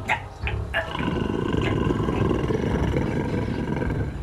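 A long, rough werewolf roar that starts about a second in and holds to the end, after a few short sharp sounds in the first second.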